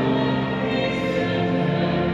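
Choir singing sacred music with long held notes, resounding in a large cathedral.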